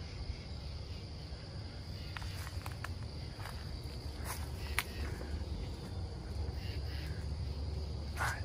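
Crickets chirping steadily, with a few scattered footsteps crunching on gravel and a low steady rumble underneath.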